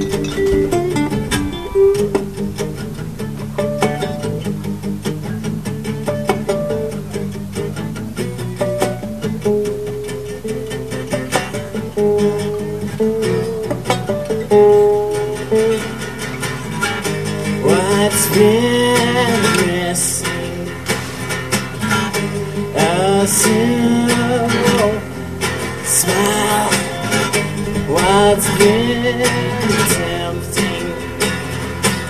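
Two acoustic guitars playing an instrumental passage: a lead acoustic guitar picks single-note lines over a steady rhythm guitar, and in the second half there are repeated notes that swoop up and down in pitch.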